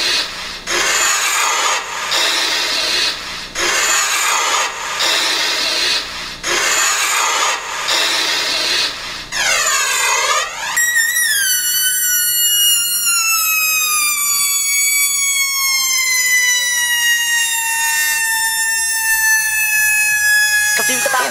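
Breakdown of a hard dance track with the kick drum and bass dropped out: pulses of rushing synth noise about every second and a half, a swooping sweep about halfway through, then a long synth tone sliding slowly down in pitch.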